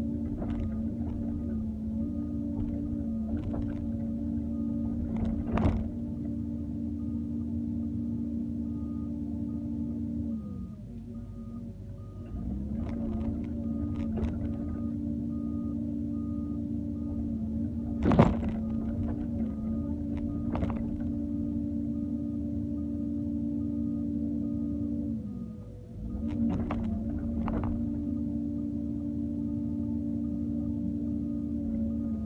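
Doosan 140W wheeled excavator's engine and hydraulic pump running as it works, heard from the cab as a steady droning hum that drops away briefly twice when the hydraulics ease off. Sharp knocks of the bucket and soil come through at intervals, the loudest about 18 seconds in.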